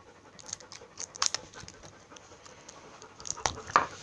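Irregular plastic clicks and crackles as a small plastic putty tub is handled and its lid worked open, a cluster about a second in and a few louder ones near the end.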